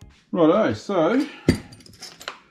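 A man's voice speaking briefly, then a single sharp metallic clink about one and a half seconds in, with a few fainter clicks after, as a steering spindle assembly is handled on a metal workbench.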